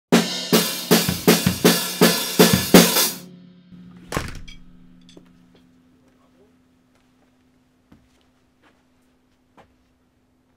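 Acoustic drum kit played hard: a fast run of drum and cymbal strokes, about three a second, stops abruptly after about three seconds. A single hit a second later rings out and dies away, leaving a faint steady hum and a few soft knocks.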